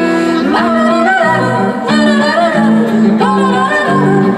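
Live band playing a quiet passage: a woman singing a wavering melody over plucked laouto and electric guitar, with no drums.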